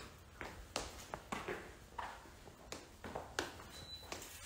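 Faint, irregular light clicks and taps, about half a dozen over a few seconds, against quiet room tone.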